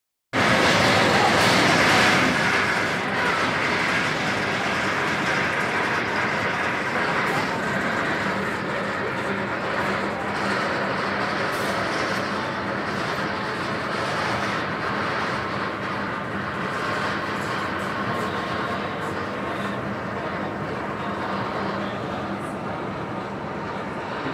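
Nitro roller coaster's chain lift running as a train climbs the lift hill: a steady mechanical rattle with a low hum, loudest at the start and slowly easing off.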